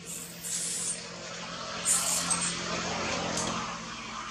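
A motor vehicle running close by: a steady engine hum under a broad hiss, with two short bursts of hiss, one just after the start and one about two seconds in.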